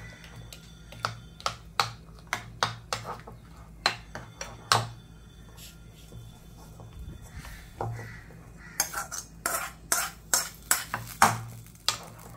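A metal spoon clinking and scraping against a ceramic bowl as thick moringa leaf chutney is stirred, in irregular taps that come faster over the last few seconds. A low steady hum runs underneath.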